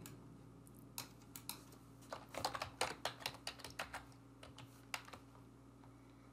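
Typing on a computer keyboard: a few single clicks about a second in, then a quick run of keystrokes lasting about two seconds, and one last click near the end. All of it is soft.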